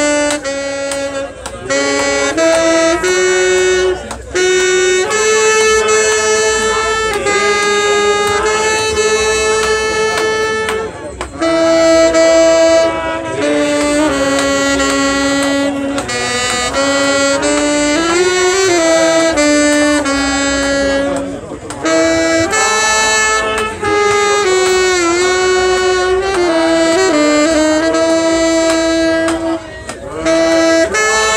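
A saxophone playing a slow melody of long held notes, some of them sliding or wavering in pitch.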